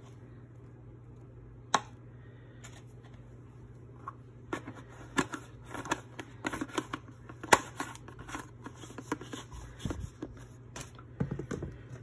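Metal measuring teaspoon scooping dried oregano from its container and tapping it into a ceramic bowl of spices. A single sharp click comes a little under two seconds in, then a run of small clicks, taps and rustles, the loudest a bit past the middle.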